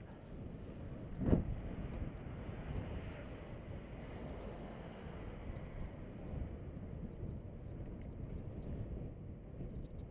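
Wind buffeting a bike-mounted camera microphone over the rumble of mountain-bike tyres rolling on paving and dirt, with one sharp thump a little over a second in.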